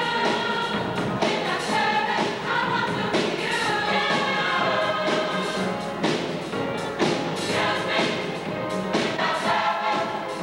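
Gospel choir singing in full voice over a regular beat that falls about once a second.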